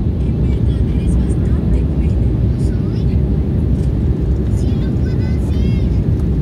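Steady low roar of an Embraer 190 airliner's cabin in flight, its twin turbofan engines and the airflow heard from a window seat as it descends on approach to landing. Faint voices come through near the end.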